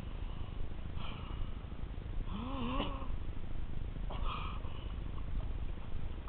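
Muffled low rumble of a GoPro's waterproof housing underwater, with a few short hissy bursts and a brief wavering hum about two and a half seconds in.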